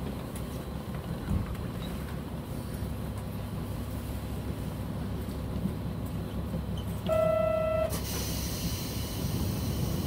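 Diesel railcar idling at a station stop with a steady low rumble. A little after seven seconds a single short, steady tone sounds for under a second, followed at once by a hiss of released compressed air.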